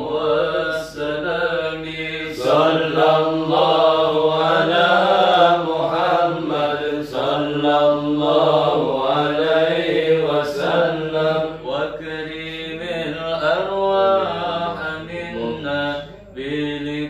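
Men chanting an Arabic sholawat in praise of the Prophet Muhammad, without instruments, in long drawn-out phrases whose pitch winds up and down.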